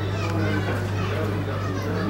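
Several voices talking at once, overlapping and lively, over a steady low hum.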